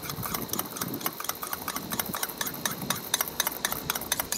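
A spoon stirring a dry mix of ground peppers and salt in a small bowl: quick, irregular ticking and scraping of the spoon against the bowl, several strokes a second.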